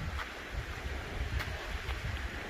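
Wind buffeting the microphone in a steady low rumble, with a few faint footsteps on an icy gravel trail.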